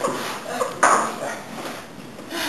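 A single sharp clink with a short ring, a little under a second in, among faint background sounds.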